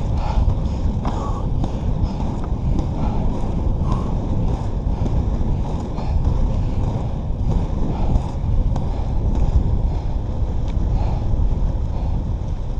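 A headwind buffeting the microphone in a steady low rumble, over inline skate wheels rolling on asphalt.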